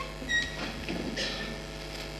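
Steady electrical hum from the podium microphone and sound system during a pause in the speech, with a short faint high tone soon after the start and a brief hiss about a second in.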